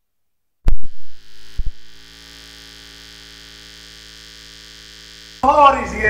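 Two loud thumps about a second apart as the audio cuts in, then a steady electrical mains hum through the sound system; near the end, loud voices of a crowd break in.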